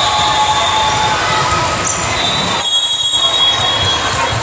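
Busy gym with several volleyball courts: a steady din of voices with long, high-pitched squeals, typical of sneakers skidding on the hardwood court.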